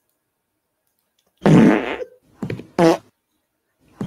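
Audio of a short meme video playing back: a string of short, loud, low-pitched blasts. The first and longest comes about a second and a half in, two quick shorter ones follow, and another starts at the very end.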